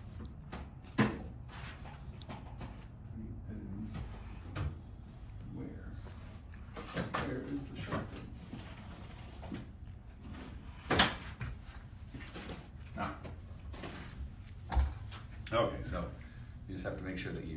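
Rummaging in a wooden cupboard: doors and drawers opening and closing, with scattered knocks and clatters, the loudest about eleven seconds in.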